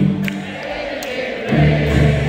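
Live country-rock band playing on stage, with voices, guitars and drums, recorded from the audience. The low bass line drops back briefly and comes in again strongly about three quarters of the way through.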